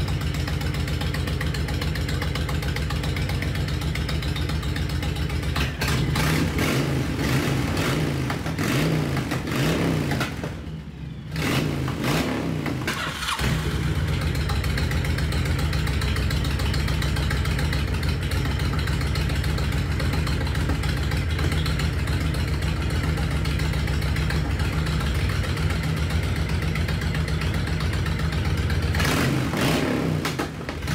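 Honda VTX1300 V-twin engine running after a carburetor clean-out and intake clamp fix: a steady idle, throttle blips from about six seconds in, a brief dip in level just after ten seconds, then steady running again with another blip near the end.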